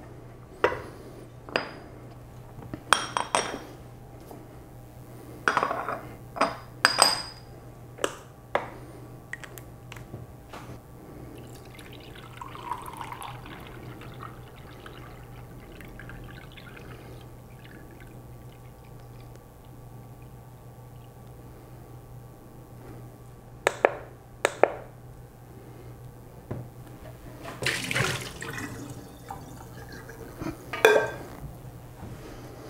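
Water poured from a pitcher into a textured metal jar standing on a glass-platform kitchen scale, the pour a soft steady splashing through the middle of the stretch. Sharp clinks of metal on glass come as the jar and pitcher are handled and set down, several in the first few seconds and two more near the end, followed by a short noisy burst.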